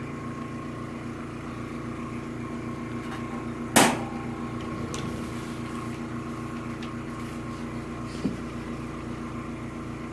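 Sheet-metal top lid of a rack-mount laser diode mount shut once with a loud clank a little under four seconds in, over a steady machine hum. A small click follows near the end.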